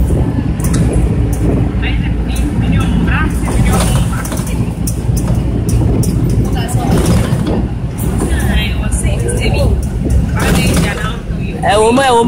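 A trotro minibus driving, heard from inside the passenger cabin: a steady low engine and road rumble, with indistinct voices talking at several points.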